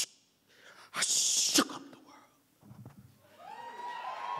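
A sharp, hissing exhale into a close stage microphone about a second in. Near the end a steady musical tone with overtones swells in.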